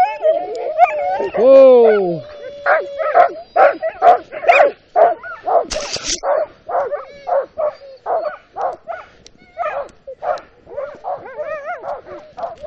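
Sled dogs barking and yelping, several voices overlapping. A high wavering whine and a falling howl come early on, followed by quick barks two or three a second. There is a brief scraping rustle about six seconds in.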